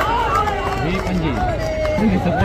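A crowd of men shouting and calling out, many voices overlapping, with raised shouts near the start.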